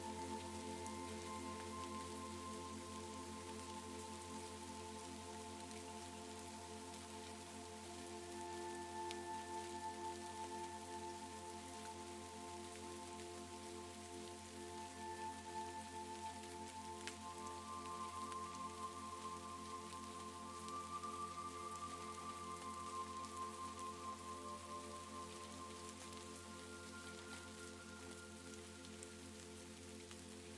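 Steady rain with scattered raindrop ticks, layered over soft ambient background music of long held chords. The chord shifts to higher notes a little past halfway and again near the end.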